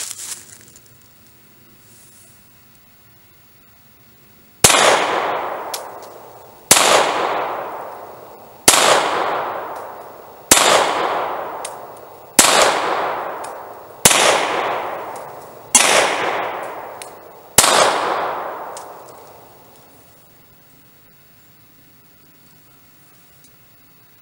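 Eight shots from a Beretta Model 70S .380 ACP pistol, fired slowly about two seconds apart starting some four and a half seconds in, each crack followed by a long fading echo.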